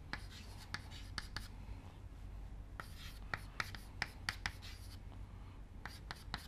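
Chalk writing on a chalkboard: irregular sharp taps and short scratches as letters are formed.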